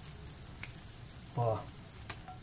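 Coalho cheese cubes sizzling faintly as they brown in a hot cast-iron skillet.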